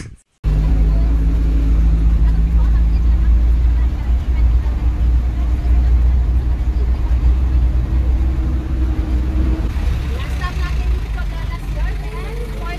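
Vehicle driving on a dirt road, heard from inside the cabin: a loud, steady low engine and road rumble that starts suddenly about half a second in.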